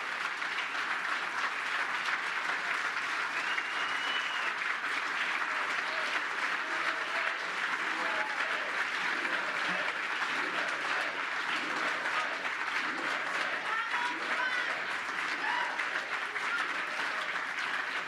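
Large audience applauding steadily, with scattered voices calling out and a whistle through the clapping.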